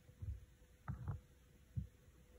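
Four faint, low, dull thuds, irregularly spaced, over a steady faint hum.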